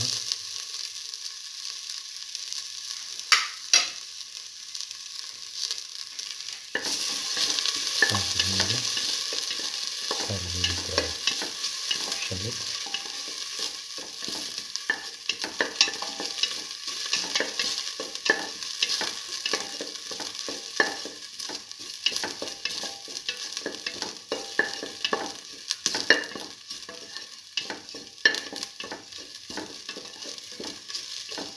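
Shallots and ginger sizzling in hot oil in a steel pan while a spoon stirs them, with frequent clicks and scrapes against the metal. The sizzle turns louder about seven seconds in.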